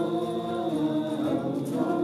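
A group of men and women singing a devotional chant together, one continuous sung line without a break.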